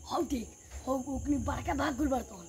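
Crickets chirring steadily at a high pitch in a night-time outdoor setting, with a person's voice speaking in short phrases over them.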